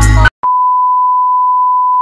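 Background music cuts off just after the start, and after a brief gap a steady 1 kHz test tone begins, the reference beep that goes with SMPTE colour bars, holding one unchanging pitch.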